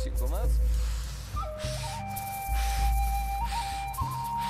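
Rapid, deep breathing in and out, close to a clip-on microphone: a run of even, hissing breaths in Wim Hof-style breathwork pushed to a faster pace. Soft background music with a held, flute-like melody plays under it.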